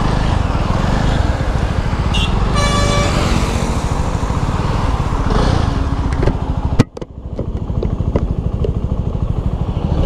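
Jawa 300's liquid-cooled single-cylinder engine running under the rider as the motorcycle moves off into traffic. A short vehicle horn honk sounds about three seconds in. The sound drops out for a moment near seven seconds, then the engine carries on.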